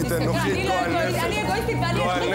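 Speech: people arguing, voices in a heated exchange.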